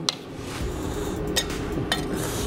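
Three light metallic clinks as a blade and template are set down on a steel anvil, over a steady low hum of the shop.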